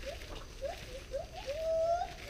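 Gibbons calling: a run of short rising whoops that come faster and faster, ending in one longer rising note near the end.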